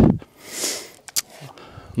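A person breathing in through the nose with a short sniff, then a single sharp click a little after a second in.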